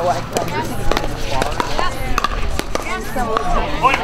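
Pickleball paddles striking a hollow plastic ball during a quick rally, a series of sharp pops at irregular intervals a fraction of a second apart.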